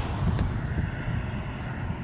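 Steady low rumble of outdoor background noise by a road, with no single clear event.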